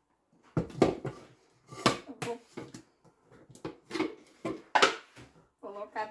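Several sharp knocks and clatters of a plastic blender jar being handled and set down on a stone counter.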